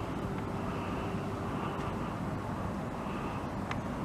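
Outdoor ambience of distant engine noise: a steady low rumble with a hum over it that fades out about halfway through, and one faint click near the end.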